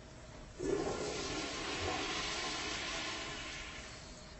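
A toilet flushing: a sudden rush of water about half a second in that slowly dies away.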